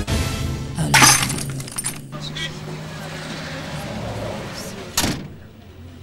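A car colliding with a small Suzuki: a loud crash about a second in, followed by a steady low hum and another sharp bang near the end.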